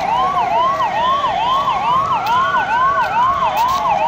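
Police vehicle siren in a fast yelp, about three quick pitch sweeps a second, with a second, slower wail rising and falling underneath it.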